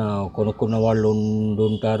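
A man's voice talking in a drawn-out, level tone, with a few short breaks between phrases.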